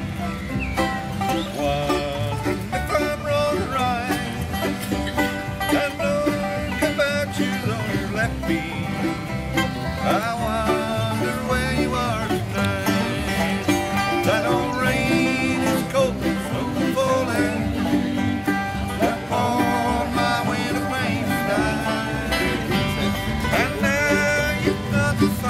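Bluegrass music without singing: an instrumental passage of picked banjo and guitar at a steady level.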